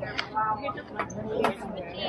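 Indistinct voices of several people talking at once, with a few sharp clicks about a second in and near the middle.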